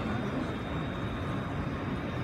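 Steady low rumble of a large exhibition hall's background noise, with a faint steady high-pitched whine over it.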